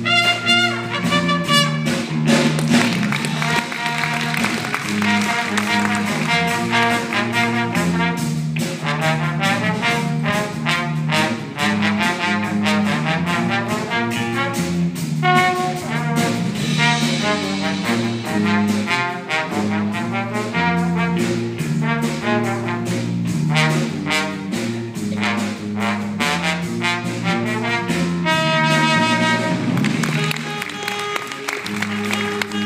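Jazz big band playing live: a trombone solo over a steady bass line and drums, with the band's brass section filling in near the end.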